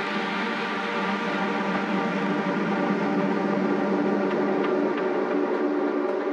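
Electronic music from a techno DJ mix: a sustained, droning synth texture of layered steady tones, with no clear beat.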